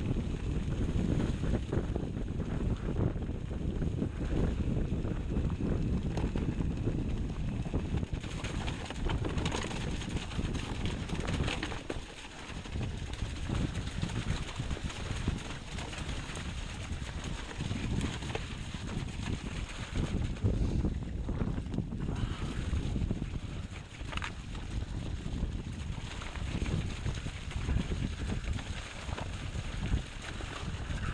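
Mountain bike descending a rough, muddy trail at speed: wind buffeting the microphone over the rolling of the knobbly tyres, with frequent rattles and knocks from the bike over bumps.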